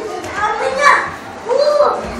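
Young children's high voices calling out and squealing as they play, with two louder cries, one about halfway through and one near the end.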